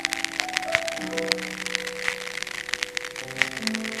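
Live chamber ensemble of grand piano, flute, drum kit and double bass playing: held notes over quick, light ticking percussion.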